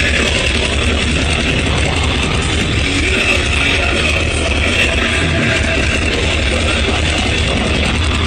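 Thrash metal band playing live at a steady, loud level: distorted electric guitars over drums.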